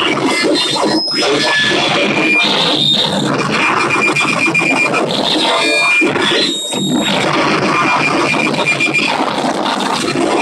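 Live noise music played on electronics: a loud, dense wall of crackling, grinding noise, with thin high whistling tones cutting in and out over it and a brief drop in level about two-thirds of the way through.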